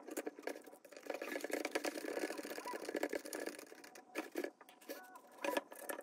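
Small screws being hand-driven with a precision screwdriver through an aluminium strip into 3D-printed plastic brackets, with many irregular clicks and scraping sounds from the tool and parts.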